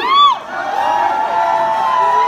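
Concert audience cheering and whooping, many voices overlapping, with one loud whoop that rises and falls right at the start.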